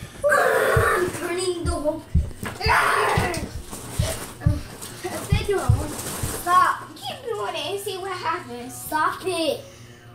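Children's voices shouting and screaming in a small room, with a run of short, dull thuds between about one and six seconds in.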